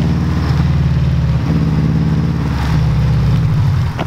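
Car engine and exhaust running loud and low at steady revs as the car drives off, with small changes in throttle along the way; it eases off just before the end.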